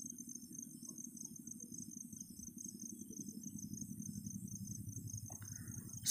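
Faint room noise under a steady, high-pitched rapid pulsing trill, like an insect's.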